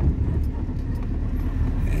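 Steady low rumble of a car heard from inside its cabin, the engine and road noise of the vehicle he is sitting in.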